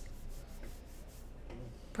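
Faint rubbing noise over a low, steady hum.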